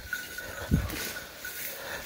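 Leaves and branches rustling and footsteps in thick brush as a walker pushes through dense cover, with a short low thump about three quarters of a second in.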